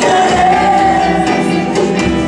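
Church worship music with singing.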